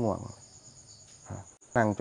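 Crickets chirring: a faint, steady, high-pitched trill that carries on through a pause in the speech.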